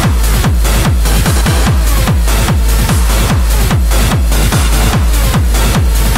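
Hard trance dance music with a heavy kick drum on every beat, each kick dropping in pitch, under a dense wash of synths.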